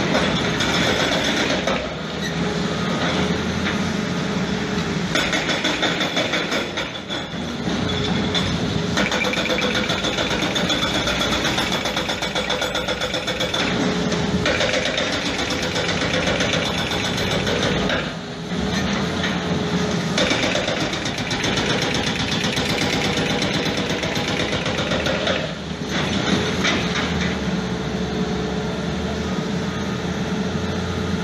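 Quarry chain saw machine running as its long blade cuts into a marble block: a steady, loud mechanical drone with a constant hum, dipping briefly a few times.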